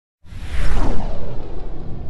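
A whoosh sound effect with a deep rumble, starting abruptly about a quarter second in and sweeping down in pitch as it fades.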